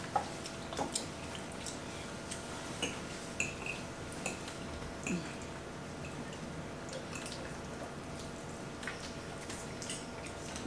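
Scattered light clicks and clinks of forks and spoons against plates and bowls during a meal, over a faint steady room hum.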